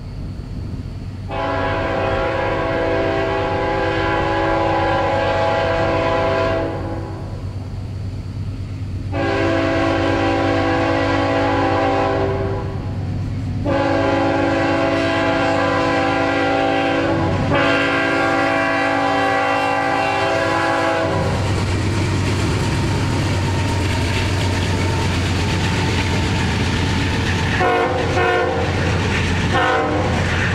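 CSX light-engine consist of GE diesel locomotives sounding a multi-note air horn in four long blasts, the signal for a grade crossing. The diesels then rumble past steadily, with a few short broken horn sounds near the end.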